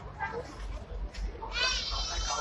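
Voices of people on the platform over a steady low hum, with a loud, very high-pitched squeal, like a young child's, starting near the end.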